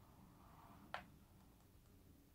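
Near silence broken by a single short click about a second in, the press of a button on a TV remote control.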